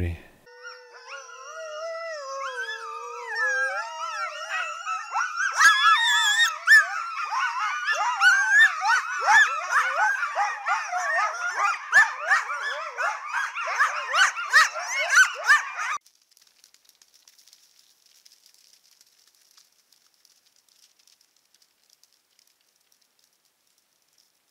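A group of coyotes howling and yipping together. Several long wavering howls overlap at first, then build about five seconds in into a dense, louder chorus of rapid high yips and yelps, which cuts off suddenly about two-thirds of the way through.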